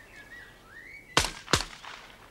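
Two shotgun shots fired in quick succession, about a third of a second apart, from an over-under shotgun at clay targets. Each shot is a sharp report with a short echoing tail.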